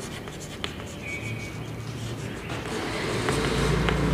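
Chalk writing on a blackboard: soft scratching strokes and light taps as words are written. A low steady rumble grows louder in the background near the end.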